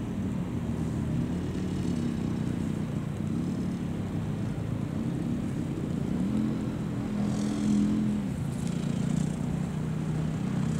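A car engine revving up and down several times, loudest about six to eight seconds in, as a car tries to pull away on wet, rutted grass.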